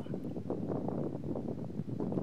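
Wind blowing on the microphone: a steady low rumble with many small irregular crackles.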